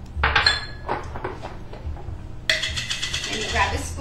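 Kitchenware clinking and scraping against a glass bowl: a sharp clink about a quarter second in, a few light knocks, then a scrape over the last second and a half as chopped onion goes into the dip.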